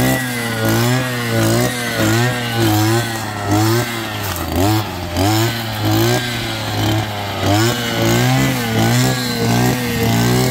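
Petrol brush cutter running hard, its engine revving up and down over and over, about once a second, as it cuts into brambles and tall weeds.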